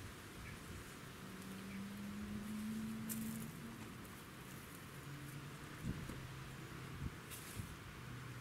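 Brief rustles of an Indian peacock's train feathers, twice, as it folds and lowers its display fan. They sit over a faint outdoor background with a low hum that rises slightly in pitch for a couple of seconds.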